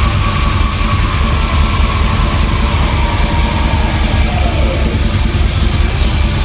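Metal band playing live: distorted electric guitars over drums, with cymbal strikes keeping an even pulse of about three to four a second.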